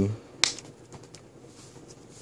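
One sharp snap about half a second in as a fold-out card flap of a handmade paper mini album is handled, then faint light handling sounds of the card pages.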